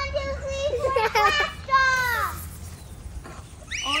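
Young children's voices crying out and squealing in play: a long high held cry, a few quick cries, then a falling 'whoa' about two seconds in.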